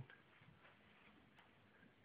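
Near silence: faint room tone, with one faint tick a little over a second in.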